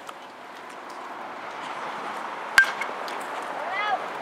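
Metal baseball bat hitting a pitched ball about two and a half seconds in: a single sharp ping with a brief ring, the loudest sound, over a steady murmur of spectators' voices. A voice calls out just before the end.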